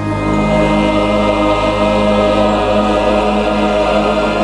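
Choir with instrumental accompaniment singing the closing 'Amen' of a hymn, holding one long steady chord.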